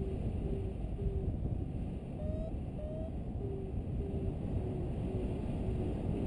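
Wind rushing over the microphone of a paraglider in flight, with a variometer beeping steadily, a little under two short beeps a second, which signals a climb. About two seconds in, two higher, slightly rising beeps sound, then the lower beeping resumes.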